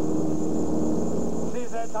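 Steady drone of an airplane's engines heard inside the cabin. A voice comes in over the radio near the end.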